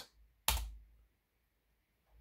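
A single keystroke on a Lenovo laptop keyboard about half a second in: the Enter key pressed to run a typed terminal command.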